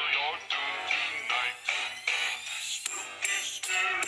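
Beatboxing run through the Voloco voice-effects app, the voice given a synthetic pitched sound over a steady repeating pulse. Sharp high ticks join in about three seconds in.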